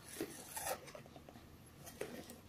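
Faint rubbing and scraping of a cardboard box being handled, with a couple of light scuffs in the first second.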